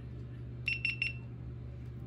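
GoPro Hero 9 Black camera giving three quick high-pitched beeps, one pitch each, as it powers on.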